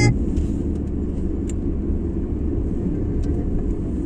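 Steady low rumble of a car driving on a paved road, heard from inside the cabin, with a couple of faint ticks.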